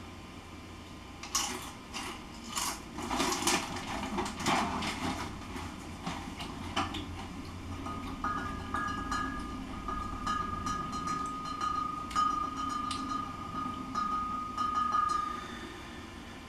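Handling of a 40 oz glass bottle of Hurricane malt liquor: scattered clicks and crinkles over the first several seconds, then, from about halfway, a steady thin high tone with faint ticks while the bottle is raised to drink.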